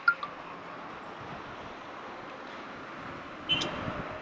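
Outdoor street background noise, steady and fairly quiet, with a couple of short clicks just after the start and one brief sharp, high sound about three and a half seconds in.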